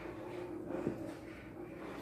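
A small plastic die tossed onto carpet, landing with one faint soft tap a little under a second in, over quiet room tone.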